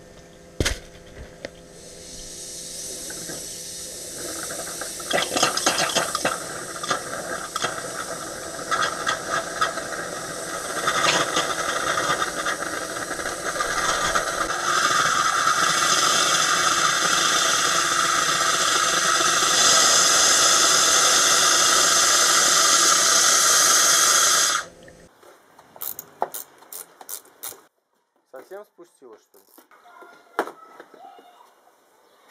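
Compressed-air blow gun blowing out power-steering hoses to purge the leftover old fluid and dirt. It hisses in short bursts at first, then in one long steady blast that cuts off suddenly near the end, followed by a few quiet clicks.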